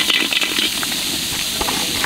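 Chopped onions frying in hot oil in a large metal kadai, a steady sizzling hiss.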